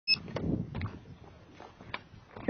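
A short high electronic beep right at the start, like an action camera's start-of-recording tone, followed by rustling handling noise with a few sharp clicks that die away.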